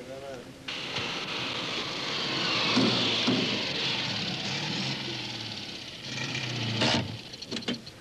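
Citroën 2CV driving along and pulling up, with its engine and road noise running steadily, loudest about three seconds in. A sharp car-door clunk comes about seven seconds in, followed by a few small clicks.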